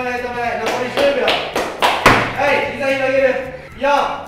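Large medicine ball slammed onto a gym floor: several dull thuds, the loudest about halfway through.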